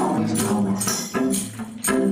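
Electric guitar playing an instrumental passage, with a tambourine struck in a steady rhythm about three times a second.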